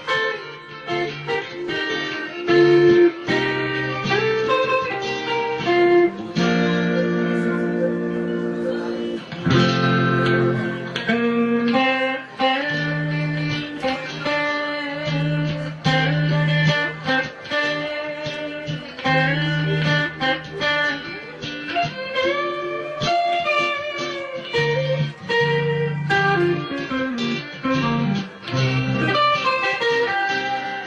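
Amplified acoustic-electric guitar played live: an instrumental melody of picked single notes, several bent up and down, with held chords a few seconds in, over a steady low bass part.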